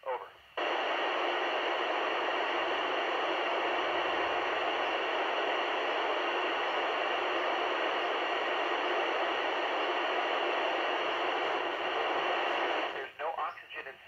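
FM receiver static from a Yupiteru multi-band receiver on the ISS downlink frequency, 145.800 MHz: a steady, loud hiss cuts in abruptly under a second in and holds until near the end. It is the sign of the space station's signal dropping out mid-answer, leaving the open squelch passing only noise.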